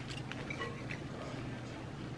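Quiet room tone with a faint steady low hum and a few faint light ticks.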